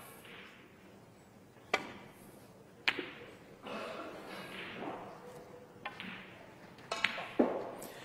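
Snooker shot: a sharp click of the cue striking the cue ball a little under two seconds in, then a second sharp click about a second later as the cue ball hits an object ball. A few fainter knocks follow near the end as the balls run on.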